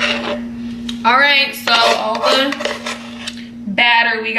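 A utensil scraping around a wooden mixing bowl, giving bursts of squeaky, gliding tones from about a second in, over a steady low hum.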